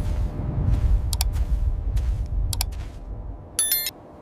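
Deep rumble with a few sharp clicks, fading out about three and a half seconds in, then a brief high electronic chirp just before the end.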